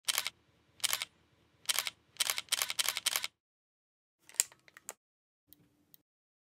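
A series of short, sharp mechanical clicks: seven in the first three seconds, coming faster toward the end of the run. After a pause there is a fainter cluster of clicks, then a few faint ticks.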